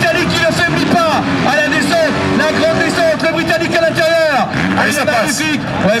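Motocross bikes racing on the track, their engines rising and falling in pitch as the riders work the throttle through a turn, with a man's voice heard over them.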